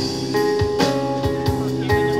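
Live rock trio playing an instrumental passage: acoustic guitar over electric bass and a drum kit, with sustained guitar and bass notes and regular drum strikes.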